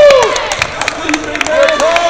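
Indoor basketball game in a gym: sharp knocks and claps over crowd voices, with short, arching high-pitched squeals, the loudest right at the start and another near the end.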